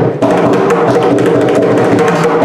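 Two mridangams played together in a rapid run of pitched drum strokes with a short break just after the start. The phrase is a mora, the cadential rhythmic pattern, in misra jati ata talam, a cycle of 18 beats.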